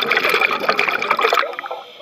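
Scuba regulator exhaust: exhaled air bubbling out in a loud, crackling burst close to the microphone, fading out about a second and a half in.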